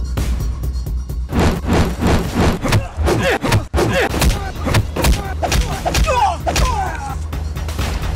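Fight-scene soundtrack: a steady bass-heavy music track, joined about a second in by a rapid flurry of punch and hit sound effects that runs until near the end.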